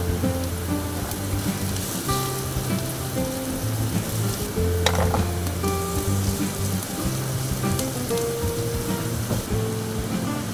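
Garlic, green onions and diced onion sizzling in hot oil in a frying pan, stirred with a silicone spatula, with a sharp tap about five seconds in. Background music with held notes plays over it.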